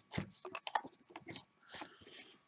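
Pages of a disc-bound planner being flipped and handled: a quick, irregular string of soft paper rustles and light taps.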